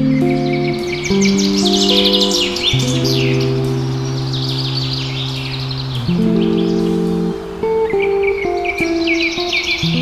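Small birds chirping in quick, rapid series, busiest in the first few seconds and again near the end, over slow background music of long held low chords.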